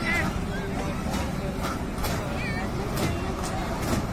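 Fairground ambience from kiddie rides in motion: a steady low rumble with scattered clacks and people's voices, and a brief warbling tone about halfway through.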